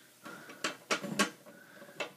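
Three sharp clicks or knocks in quick succession, a little after half a second in, over faint background noise.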